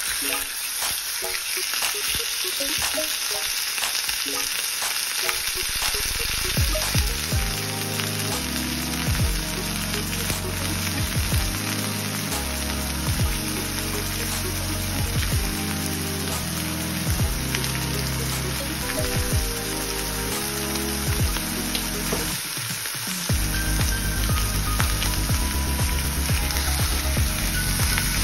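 Miso-marinated beef slices searing in hot oil in a steel frying pan, a steady sizzle. Background music with a stepping bass line comes in a few seconds in and grows louder near the end.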